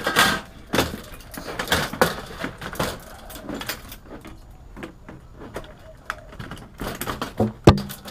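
Plastic TV housing being lifted and pulled about on a metal chassis, with scattered knocks, clicks and rattles of plastic and metal parts and wires, and one sharp knock near the end.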